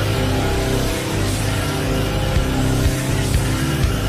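Loud heavy rock music with distorted electric guitar playing steadily, with no singing.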